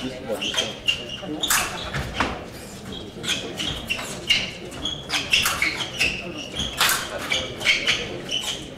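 Fencers' athletic shoes squeaking on the piste in many short, high chirps during quick footwork, with several sharp clacks, the loudest about one and a half, two and seven seconds in.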